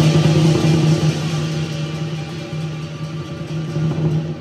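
Lion dance percussion playing without pause: a big drum rolling under a continuous wash of clashing cymbals, easing a little in loudness toward the end.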